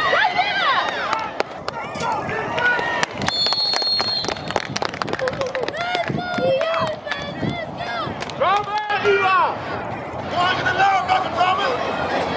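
Spectators and coaches shouting and cheering from the sideline of a youth football game, with one referee's whistle blast of about a second a little over three seconds in, blowing the play dead.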